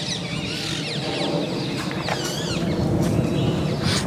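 Several birds chirping and calling over one another, short rising and falling calls, over a steady low rumble of outdoor background noise.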